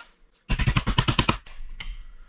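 A quick rattling run of about a dozen sharp metal knocks in under a second, then one more knock near the end: a steel punch or screwdriver being driven and worked against an RV power jack part held in a bench vise, to knock a piece out.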